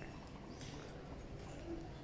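Faint outdoor ambience: a low steady rumble with a few light, scattered taps of footsteps on stone paving.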